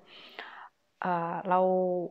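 A woman's soft breath drawn in through the mouth between sentences, then a drawn-out spoken hesitation, "er... we", in Thai.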